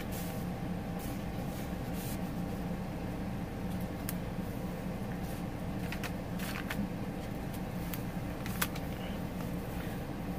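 Paper pages, tags and pocket inserts of a handmade junk journal rustling and flicking as they are handled and turned, in brief scattered scrapes over a steady low hum.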